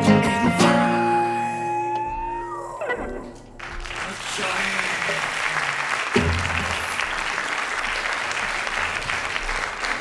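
Acoustic and electric guitars play the final chords of a song, which ring out and fade over about three seconds. Then audience applause starts and carries on, with one low thump a little past halfway.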